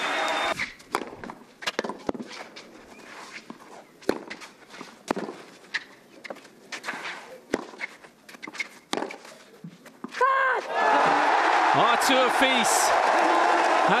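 Tennis rally on match point: sharp racket-on-ball strikes, a second or more apart, over a hushed stadium crowd. About ten seconds in the championship point is won, and the crowd erupts into loud cheering, shouting and applause.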